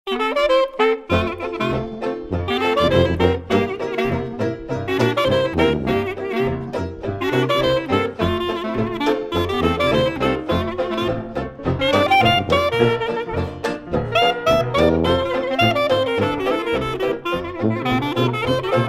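Traditional New Orleans-style jazz band playing, horns over a bass and drum rhythm section. A short lead-in is followed about a second in by the full band.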